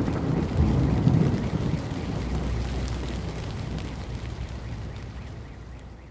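Steady rain with a low rumble underneath, fading out gradually.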